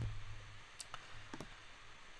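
Two faint clicks about half a second apart, from a computer mouse clicking a link to load the next web page.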